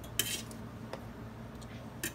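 Faint handling sounds of a fork and fingers on a metal sheet pan while pulled chicken is laid on a tortilla: a short scrape early on and a couple of light clicks.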